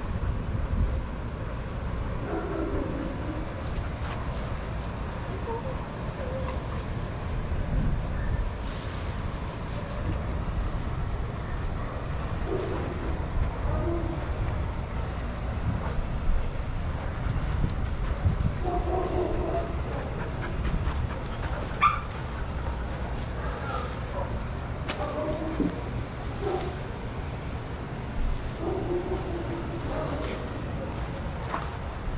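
Dogs playing together in a group, vocalizing in short spells every few seconds, over a steady low rumble.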